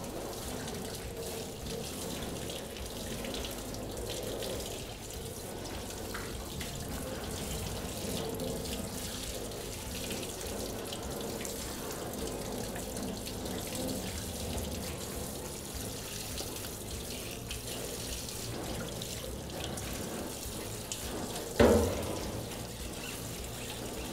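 Pull-down spray faucet running steadily onto a silkscreen frame in a stainless steel sink, the water splashing off the mesh as acrylic paint is rinsed out. A brief, louder sound comes a couple of seconds before the end.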